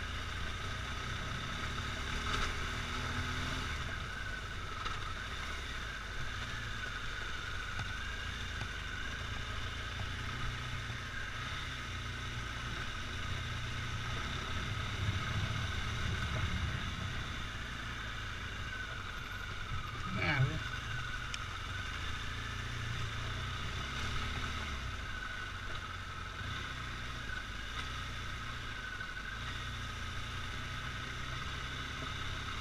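Motorcycle engine running steadily at low speed on a gravel track, with one short, sharper sound about two-thirds of the way through.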